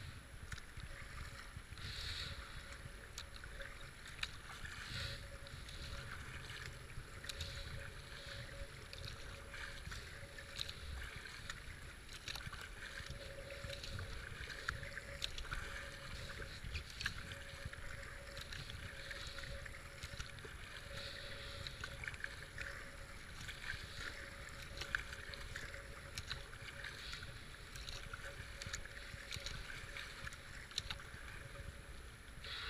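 Kayak paddling down a fast, flooded river: steady rush of moving water and spray along the hull, with a paddle swish and splash about every second and a half, and a low rumble of wind on the camera.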